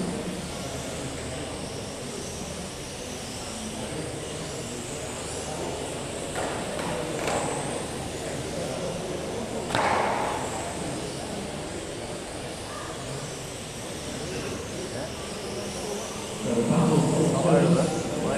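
Electric 1/12-scale RC pan cars with 10.5-turn brushless motors whining as they race round an indoor carpet track, heard as a steady background with passing whines rising and falling about halfway through, in the echo of a large hall. A sharp knock about ten seconds in.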